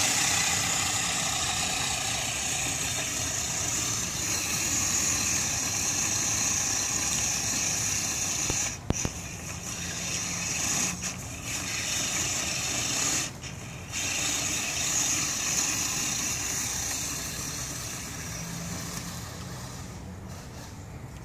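Axial SCX10 RC crawler's electric motor and gear drivetrain whining steadily under load as it climbs a hill, cutting out briefly a few times when the throttle is eased, around 9 s and again just after 13 s. The whine fades near the end as the truck drives off.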